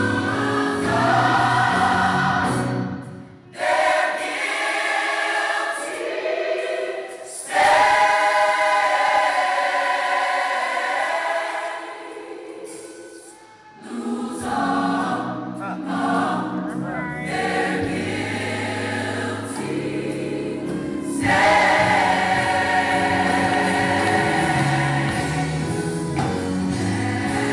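Gospel choir music: a choir singing over instrumental backing. The low backing drops out from a few seconds in until about halfway, leaving mostly the voices, then returns.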